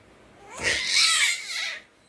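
Baby giving one long, high-pitched squeal of delight, starting about half a second in and wavering in pitch before stopping shortly before the end.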